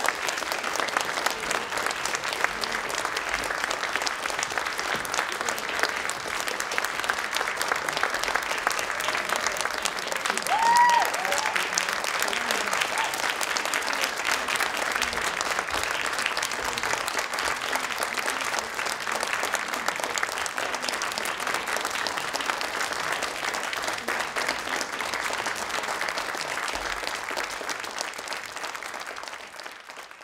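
Audience applauding steadily, with one brief shout rising out of it about eleven seconds in; the applause dies away near the end.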